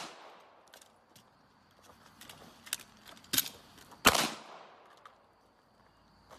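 Pistol shots fired one-handed from behind a ballistic shield: a handful of sharp, irregularly spaced reports, the loudest with a short ringing tail about four seconds in.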